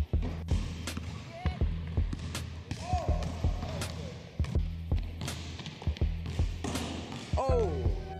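A rubber ball bouncing again and again on a wooden gym floor, sharp irregular thuds, under background music.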